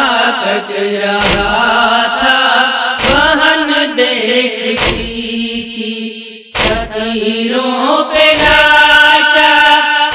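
Urdu nauha lament chanted in a slow, drawn-out melody, with a regular thud about every second and a half to two seconds keeping the beat.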